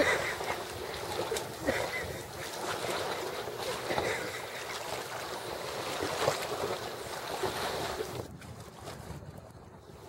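Wind buffeting the microphone over water lapping at the shore, thinning out after about eight seconds.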